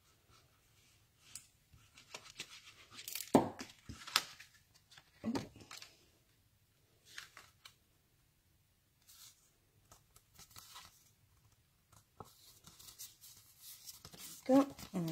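Card stock and paper being handled on a craft desk: scattered rustling and sliding of card, with a few sharp taps and clicks, loudest a few seconds in.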